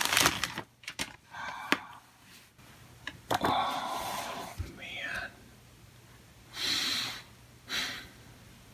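A plastic mailer bag crinkling as a paper magazine is slid out of it, then a hand rubbing and smoothing across the magazine's glossy cover in short intermittent bursts.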